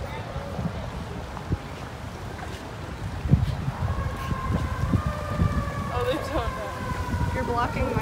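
Street noise: wind on the microphone and a low traffic rumble, with a steady vehicle whine that comes in about halfway through and falls slowly in pitch. A few faint voices come through near the end.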